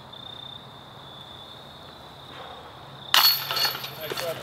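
A putted golf disc strikes the chains of a metal disc golf basket about three seconds in. It makes a sudden loud clash and jingle of chains that rings briefly.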